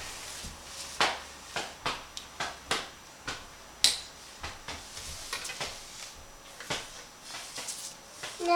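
Pens being rummaged through and handled on a table: irregular light clicks and knocks, roughly two a second, with one sharper click near the middle.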